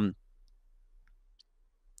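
A man's spoken 'um' trailing off into near silence, broken by a few faint small clicks.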